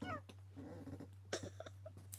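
A short, high, wavering call at the start, followed by a few soft clicks about a second and a half in, over a steady low hum.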